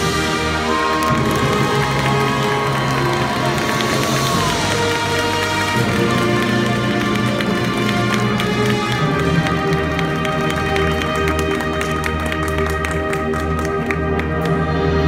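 High school marching band playing held chords over low drums, with a flurry of rapid percussion strikes near the end.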